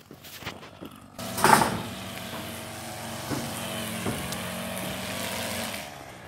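An engine running steadily at one speed, with a brief louder rush about a second and a half in.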